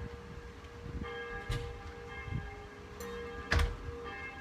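Church bells ringing, a fresh stroke about once a second, each ringing on under the next. A short knock about three and a half seconds in.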